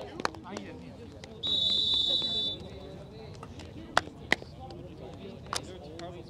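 A referee's whistle blown once, a steady high tone about a second long starting about one and a half seconds in, blowing the play dead. A few sharp clicks follow later, over distant players' voices.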